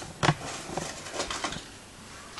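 Folded paper slips rustling and ticking against each other inside a hat as it is handled and shaken: one sharp click about a quarter second in, then a patter of small rustles that dies away after about a second and a half.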